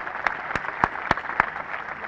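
Crowd applauding, with a few louder single claps close to the microphones standing out about three times a second.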